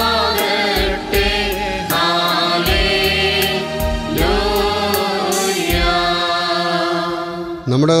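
A church choir singing a liturgical hymn with instrumental backing and a steady beat. Near the end a single man's voice takes over, chanting.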